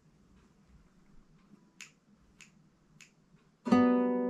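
Three soft, evenly spaced clicks, then a single note plucked on a classical guitar's open B (second) string near the end, ringing on.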